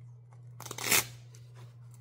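Brief rustle of a quilted fabric folder being handled and turned over, one short noisy swish a little before the middle.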